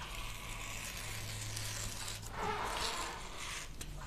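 Rotary cutter blade rolling through rayon fabric on a cutting mat: a faint gritty scraping that swells for about a second past the middle.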